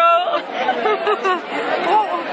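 Voices talking and laughing close by over the chatter of a crowd.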